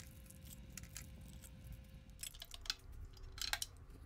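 Faint, scattered clicks and light metal taps as the flat beater is fitted onto a stand mixer and its stainless steel bowl is handled, a few near the start and a quicker cluster in the second half.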